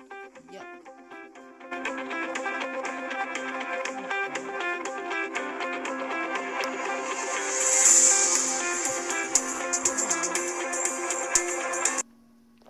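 Guitar music with plucked notes, quiet at first and louder from about two seconds in, cutting off abruptly at the end.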